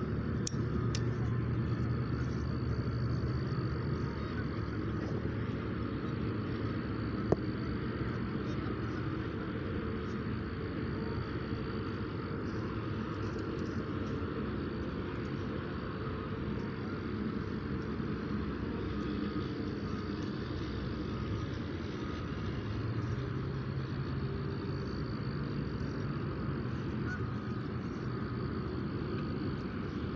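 Steady outdoor background rumble of distant road traffic, swelling near the start and again for the last several seconds, with a single sharp click about seven seconds in.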